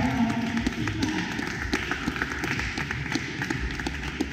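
Scattered applause from a small seated audience, irregular claps slowly dying down.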